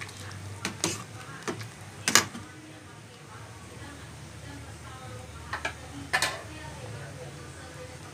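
Ladle knocking against the rim and sides of a metal cooking pot while stirring noodle soup. There are a few sharp knocks, the loudest about two seconds in and two more near six seconds, over a low steady hum.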